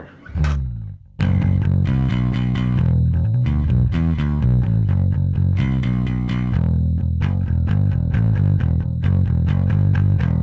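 Electric bass guitar, a Jazz bass played with a pick, through the Sushi Box FX Dr. Wattson preamp pedal (modelled on the Hiwatt DR103) and an 8x10 cabinet simulator, with the preamp's bass cut: one note about half a second in, then a continuous rock riff from about a second in.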